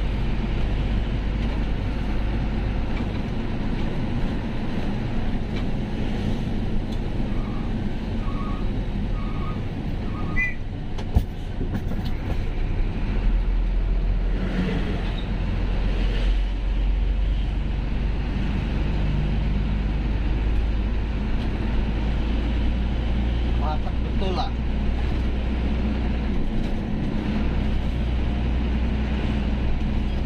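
Unladen truck's diesel engine running steadily with road noise, heard from inside the cab as it drives along. Four short beeps sound about a third of the way in, followed by a single sharp click.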